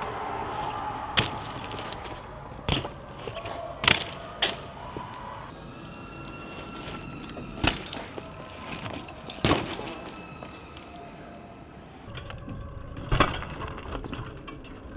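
BMX bikes riding on rough concrete, with about seven sharp clacks and thuds spread through, from wheels and frames hitting the ground on tricks and landings.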